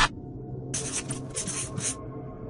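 A short burst of flickering hiss lasting about a second, starting under a second in, over faint steady background tones.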